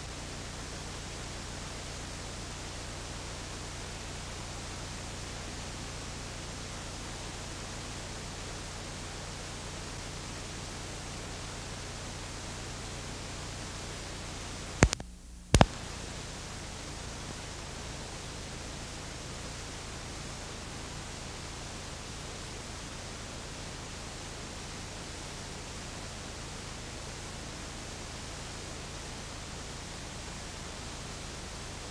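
Steady hiss with a low hum from an old analog videotape's audio track, with no programme sound on it. About halfway through come two sharp clicks about half a second apart, with the hiss briefly dropping out between them.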